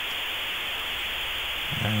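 A steady, even hiss of recording noise, with no clicks or tones in it.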